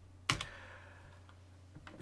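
A single computer-keyboard keystroke about a third of a second in, over a faint steady low hum.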